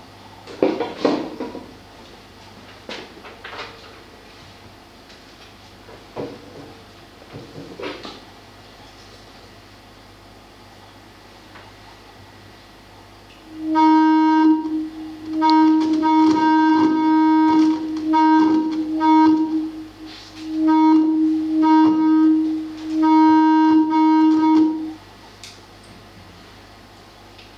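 A few soft handling knocks, then about halfway through a loud, steady buzzy tone with many overtones from a microphone-in-glass-jar feedback setup, cutting out and coming back several times before stopping near the end. It is the room being tuned by feedback, standing waves and interference.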